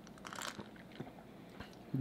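Faint eating and drinking sounds close to the microphone: quiet chewing and a sip from a glass, with a small click about a second in.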